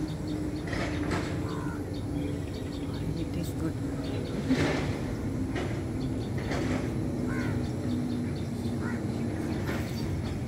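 Steady low outdoor background hum with a few faint bird calls, one about a second and a half in and another near the end.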